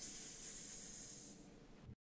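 A person sounding out the letter s as a phonics sound: one held 'sss' hiss lasting about a second and a half, then fading out.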